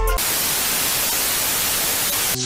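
Loud, steady hiss of TV-style static used as a transition sound. It cuts in just as the music stops.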